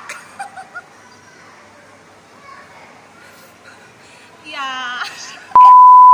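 A loud censor bleep: one steady high tone, about a second long, that cuts in sharply near the end and stops just as sharply.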